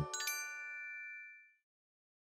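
A bright bell-like chime, struck twice in quick succession, ringing and fading away over about a second and a half as the music ends.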